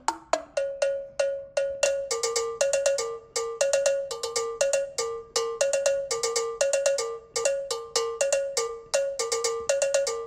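Looped electronic percussion from a music-production session: a steady rhythm of short, bell-like pitched hits alternating between two notes, several a second, growing busier with extra hits about two seconds in.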